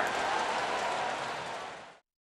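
Ballpark crowd cheering after a home run, an even roar of many voices that fades out to silence near the end.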